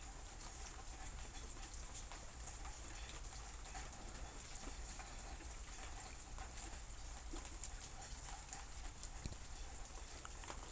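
Light, tapering rain: scattered drops ticking and pattering irregularly over a faint, steady low rumble.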